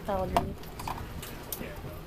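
A short voice sound at the start, then the low steady rumble of a moving boat, with a few light clicks as sunglasses are handled in plastic cup holders.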